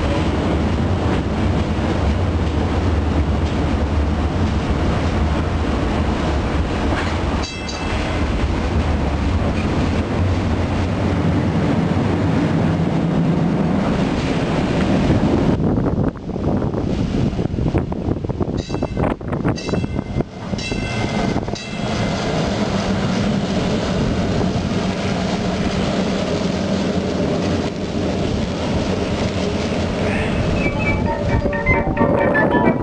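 Toronto PCC streetcar running along its track: a steady rumble of motors and wheels on the rails, heard from inside the car for the first half.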